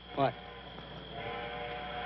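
A man says "What?", then about a second in a sustained chord of several steady tones comes in on the soundtrack and holds.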